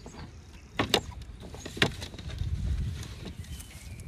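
Hands working a raw whole chicken on a metal tray, stuffing chopped herbs into it: soft wet handling sounds, with two sharp clicks about a second apart, the first about a second in, and a low rumble after two seconds.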